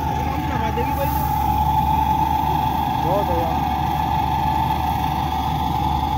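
An engine running steadily, a constant drone over a low hum, with brief faint voices about three seconds in.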